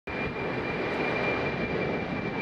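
Jet airliner climbing away after takeoff: steady engine noise with a thin, steady high-pitched whine riding over it.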